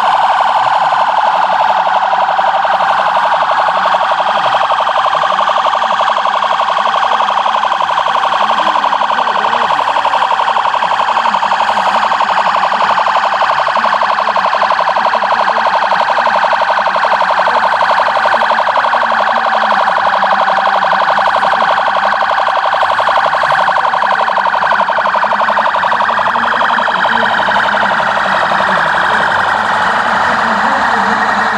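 Emergency-vehicle sirens sounding continuously, a loud, steady, fast-pulsing tone. Near the end a second siren joins, its pitch gliding up and down.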